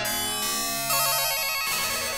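Electronic music from a piece for double bass and electronics: bright, sustained pitched tones with little low bass, and a fast warbling, trill-like figure about halfway through.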